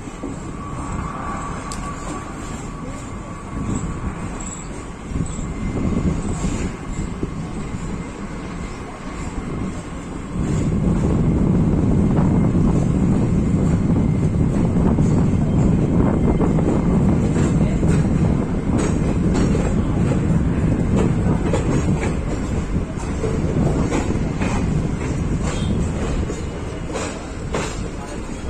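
Passenger train coach running along the track, heard from its open side doorway: a steady rumble of wheels on rail with repeated clicks as the wheels pass over the rail joints. The rumble gets much louder about ten seconds in and stays loud.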